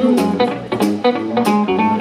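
Live blues band music: an electric guitar playing a riff in a gap between sung lines, over a steady beat of sharp percussive hits about every two-thirds of a second.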